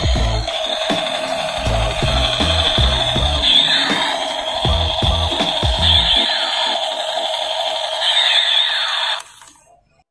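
Electronic music with a thumping beat and falling, laser-like sweeps; the beat drops out about six seconds in and the rest fades away near the end.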